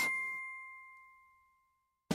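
A single bell-like ding, one clear tone that fades out over about a second.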